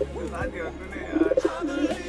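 Domestic pigeons cooing, several low coos that waver up and down in pitch.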